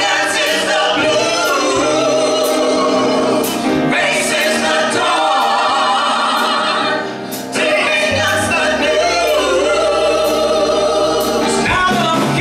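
A live band playing a funk song, with a male lead singer and a group of backing singers singing together over piano, bass and drums. The voices pause briefly a little past the middle and then come back in.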